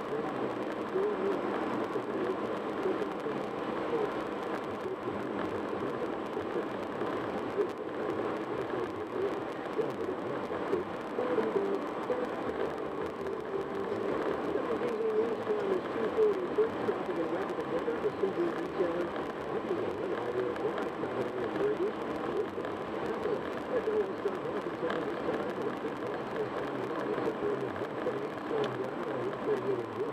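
Steady road and tyre noise inside a car cruising at highway speed, with a faint radio voice running underneath.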